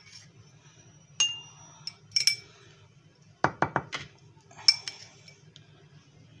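A spoon clinking against cut-glass dessert cups as crumbs are spooned into them. There are single light strikes with a brief glassy ring, and a quick run of four taps about halfway through.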